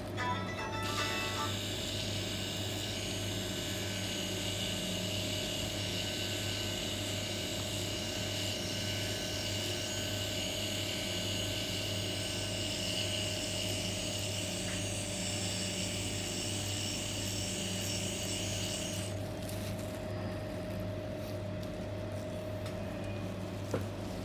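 Permanent-makeup pen machine buzzing steadily as its needle works into the eyebrow skin, over a constant low hum; the buzz stops a few seconds before the end as the machine is lifted away.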